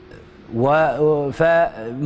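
A man's voice speaking in a drawn-out, sing-song intonation. It starts about half a second in, with several held pitches.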